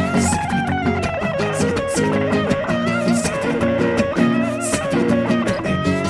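Instrumental passage from an acoustic guitar and an electric guitar playing together, the electric carrying a lead line with bent notes over the acoustic's repeating accompaniment. A bright percussive accent lands about every one and a half seconds.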